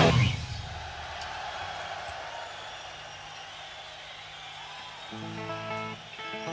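A live hard rock band's final chord cuts off at the start, leaving a low, even wash of concert crowd noise. About five seconds in, a guitar starts picking short single notes between songs.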